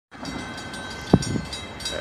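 A car crossing a railroad grade crossing, its tyres thumping twice over the rails about a second in, over steady outdoor noise.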